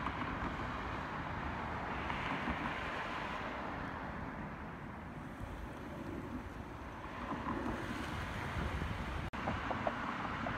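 Wind rumbling on the microphone over the steady hiss of road traffic, with a short break near the end where the shot changes.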